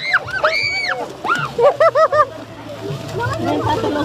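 Children's excited voices in a scramble for piñata candy: a long high-pitched squeal near the start, then three short repeated shouts about two seconds in, over general chatter.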